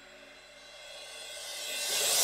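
Electronic trance track in a quiet break: a synth pad's sustained chord fades away, then a hissing noise riser swells louder through the second half, building up to the drop.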